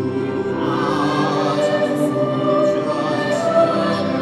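Choir singing a slow, sustained passage of a requiem over steady low held notes from the accompanying strings; the voices swell in about half a second in.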